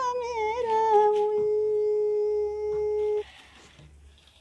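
A single singing voice, played from a cassette on a portable boombox, bends through the end of a line into one long held note that cuts off abruptly about three seconds in. Only a faint hiss remains after it.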